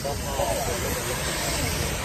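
Steady rushing hiss of wind on the phone's microphone, with faint voices of people in the background.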